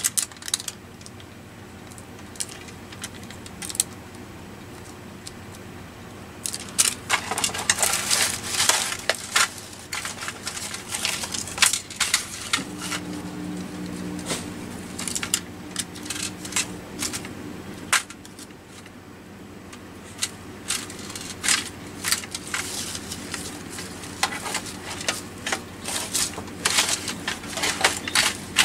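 Small metal trinkets and paper scraps clinking, clattering and rustling in a metal tin as a hand rummages through them. It is quiet at first, with many irregular clicks from about seven seconds in.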